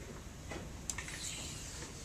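Classroom room tone with one sharp click just under a second in, followed by brief rustling.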